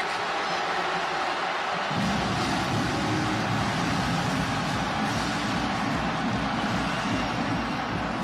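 Loud stadium noise after a touchdown, with music coming in about two seconds in, heavy in the low end.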